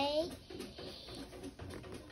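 The drawn-out end of a child's word, then faint light rustles and clicks as the cardboard-and-plastic toy box is handled.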